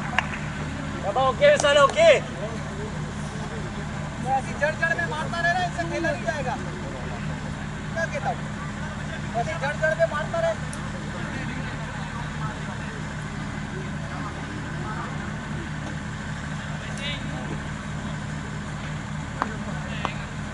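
Cricket players' shouts and calls from out on the field, in a few short bursts over the first half, over a steady low hum.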